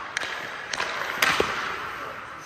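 Ice hockey pucks being shot and deflected off sticks and goalie pads: a few sharp clacks, the loudest just past the middle followed by a duller thud, echoing in the rink.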